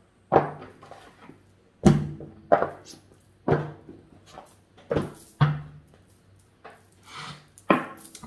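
Oracle card deck and its cardboard box being handled: a series of about seven sharp thunks and taps, some with a short low ring, as the cards come out of the box and are readied for shuffling.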